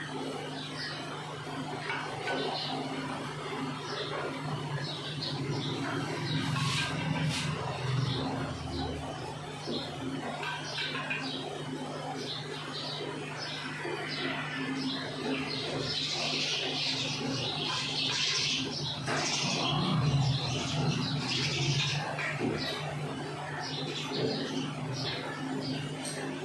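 Small birds chirping over and over, thickest in a stretch past the middle, over a steady low hum.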